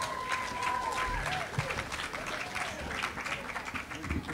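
Audience applauding and cheering: dense clapping throughout, with voices calling out over it.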